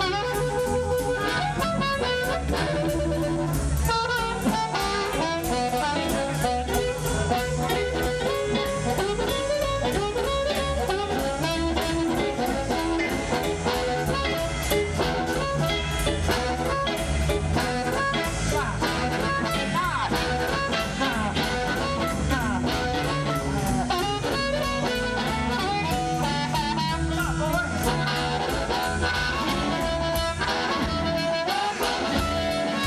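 Live electric blues band playing: amplified blues harmonica cupped to a handheld microphone, with electric guitar and drum kit behind it. The harmonica's notes bend in pitch here and there.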